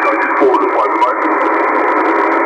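Single-sideband voice reception on the 10-metre amateur band from a shortwave transceiver's speaker: a distant station's voice, thin and narrow like a telephone, half-buried in steady band hiss.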